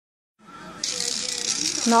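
Electric foot file with a rotating roller, switched on about a second in and running with a steady high whir. A woman's voice comes in near the end.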